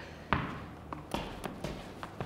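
A tennis ball being juggled on the feet: several soft, irregular taps as the ball strikes the shoe, the first about a third of a second in and a quick cluster in the second half.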